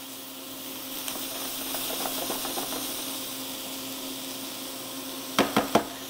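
Fava beans sautéing in oil in a skillet: a steady sizzle with a faint steady hum beneath it, the spatula stirring lightly, and a few quick knocks of the spatula against the pan near the end.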